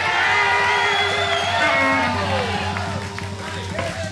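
Live electric blues band playing long held notes over a steady bass note, with the crowd cheering, whooping and shouting over it.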